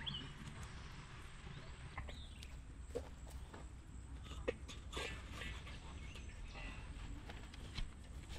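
Small wood campfire crackling with scattered sharp snaps, and a steel pan knocking against its metal stand as it is set over the fire, the loudest a sharp knock about four and a half seconds in. A bird chirps a couple of times in the background.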